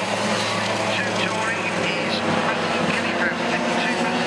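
A pack of racing karts' two-stroke engines buzzing around the circuit. The pitch of the engines keeps rising and falling as the karts accelerate out of corners and back off into them.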